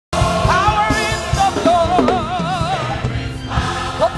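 Gospel choir song with band accompaniment: sung voices with marked vibrato over a steady low drum and bass beat.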